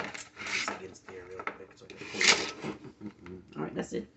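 Indistinct low speech mixed with irregular clatter and rubbing as small parts and tools are handled on a work table.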